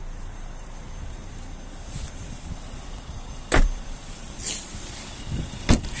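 A car door is shut with a single solid thud a little past halfway, followed by a sharp click near the end, over a low steady rumble.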